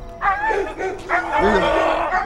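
A dog barking several times in short calls, with people's voices mixed in.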